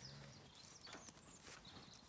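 Near silence: faint outdoor background with a few faint, brief high chirps.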